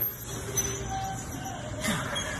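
Steady background hum of a gym, with a brief noisy swish near the end.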